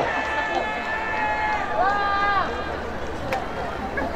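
Audience crowd noise with scattered voices calling out from the stands, a few drawn-out calls in the first half, over a low steady hum.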